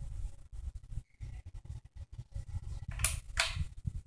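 Harbor Breeze ceiling fan running, its metal parts creaking and ticking irregularly over a low, uneven rumble. A short hissing sound comes about three seconds in.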